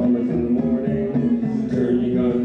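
Guitar playing a traditional Irish tune, layered on a loop station, in an instrumental passage with no lead vocal.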